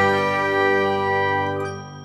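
Closing chord of an outro jingle, held and ringing out, fading away towards the end.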